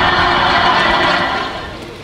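Sitcom studio-audience laughter from a laugh track, played through a tram's overhead video-screen speakers, fading away in the second half.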